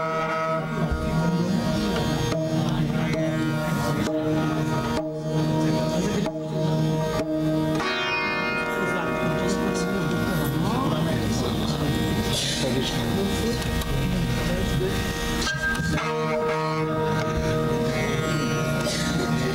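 Sarangi playing an Indian classical raga melody with sliding notes over a steady drone, its sympathetic strings ringing.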